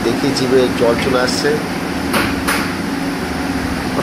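A metal spoon knocks twice against a steel pan about two seconds in, over indistinct voices and a steady low hum.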